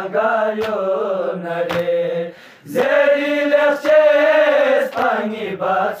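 Balti noha, a Shia lament, chanted by a male reciter in long, drawn-out held notes. A louder, higher phrase comes in about halfway through, over a steady beat about once a second.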